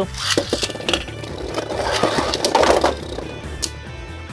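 Two Beyblade spinning tops, just launched into a plastic stadium, whir and grind across its floor, with sharp clacks as they strike each other. Background music plays underneath.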